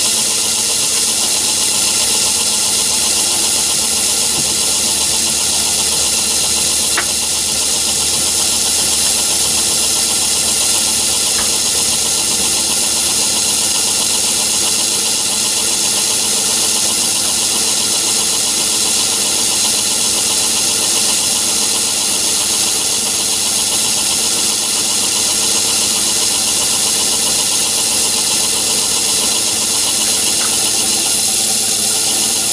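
Myford ML7 lathe running steadily with its spindle at about 460 rpm: an even mechanical drone with a thin high whine over it.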